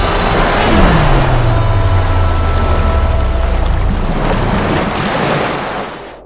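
Dramatic background score with sustained tones over a loud rushing noise, and a deep tone that slides down in pitch about a second in and then holds; it all fades away near the end.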